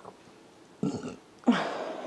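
A woman's short breath in, then a long audible sigh starting about halfway through that falls in pitch and trails off.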